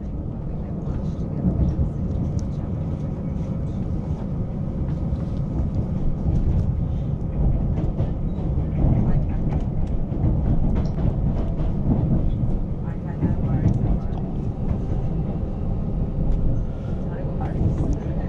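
Cabin sound of Queensland Rail's electric Tilt Train running along the line: a steady, loud low rumble of wheels on rails, with occasional faint clicks over the track.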